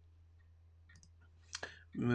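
Quiet room with a few faint clicks, then a short, louder clicking sound about three-quarters of the way through.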